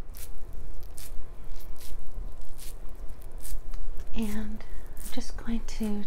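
Thick cotton pad rubbed and dabbed over the camera, right against the microphone: a quick run of soft scratchy rustles. A soft voice starts near the end.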